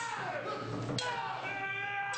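Sharp struck strokes about a second apart, each followed by a ringing, wailing tone that holds or falls in pitch for about a second.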